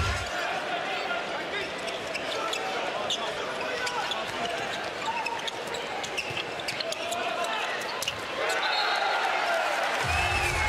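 Live handball court sound: a handball bouncing on the indoor court amid steady arena crowd noise, with many short sharp knocks. A low background music bed cuts out just after the start.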